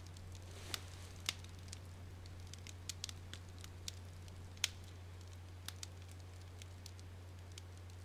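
A hushed pause in a room: faint, irregular crackles from a wood fire in a fireplace over a low steady hum, the sharpest crack a little past halfway.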